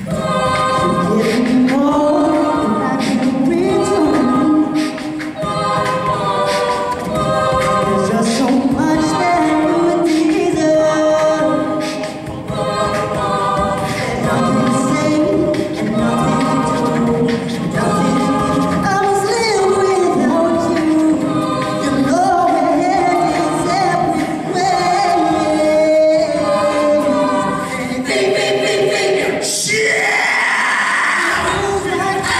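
Mixed-voice collegiate a cappella group singing in close harmony over a steady beat.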